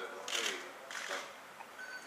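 Speech: a voice talking in a small room, in short fragments, with a brief faint steady tone near the end.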